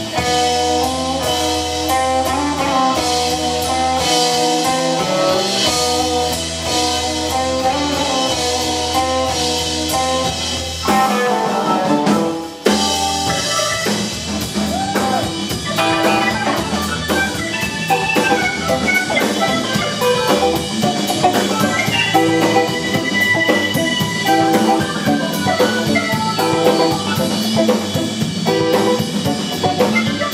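Live instrumental blues-rock played by a Hammond B3 organ, electric guitar and drum kit. Held chords fill the first part, the sound dips briefly about twelve seconds in, and then a busier melodic line runs over the drums.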